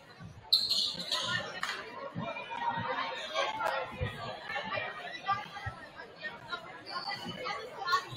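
Spectators talking in a large gymnasium, with a few irregular thumps like a basketball bouncing on the hardwood. A sudden short shrill sound about half a second in is the loudest moment, and a fainter one comes near the end.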